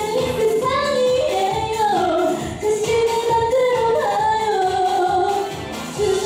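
A woman sings live into a handheld microphone over a pop dance backing track with a steady beat. It is a trot singer's cover of a Korean dance song.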